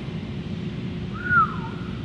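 A person whistles once, a short clear note that slides up and then falls, over a steady low hum.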